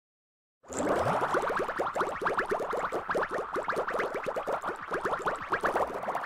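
An edited-in sound effect made of a fast run of short, rattling strokes, about ten a second, starting about half a second in after a brief silence.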